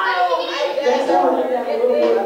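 Middle-school students talking among themselves, several voices overlapping in chatter, without clear words.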